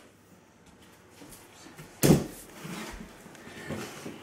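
A single sharp knock about halfway through, with faint handling noises before and after it.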